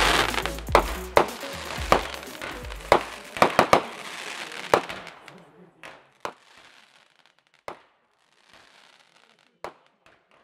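Fireworks going off: a dense run of sharp bangs and crackling, thinning after about five seconds to a few single bangs with faint crackle. Background music sounds under the first half and fades out about four seconds in.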